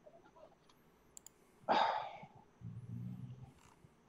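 A man's short breathy laugh, followed by a low closed-mouth hum of a chuckle.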